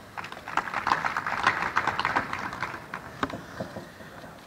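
Audience applauding: a short round of clapping that builds over the first second and dies away near the end.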